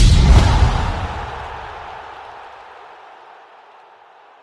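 Logo sting of an ESPN+ end card: a sudden, loud, deep boom with a rushing whoosh, fading away over about three seconds.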